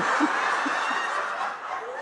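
Studio audience laughing together: a steady wash of many people's laughter that eases slightly near the end.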